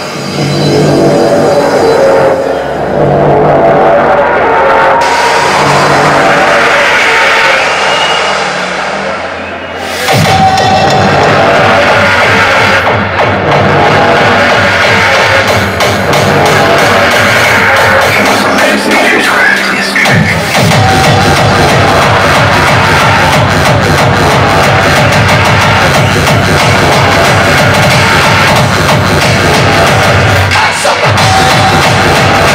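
Loud hardcore electronic dance music played by a DJ over a concert-hall PA, heard from the audience: a melodic synth passage for about ten seconds, then the kick drum comes back in, and about twenty seconds in a fast, dense pounding kick takes over.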